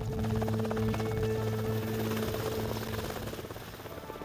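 HM Coastguard Sikorsky S-92 rescue helicopter running close by with its rotors turning, a fast, even blade beat over a steady engine rush, as it sits ready for take-off and lifts off.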